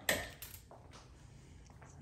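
Quiet room tone with a faint low hum after one spoken word, and a brief soft rustle about half a second in.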